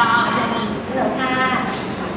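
Thai conversational speech, with a drawn-out vowel near the start.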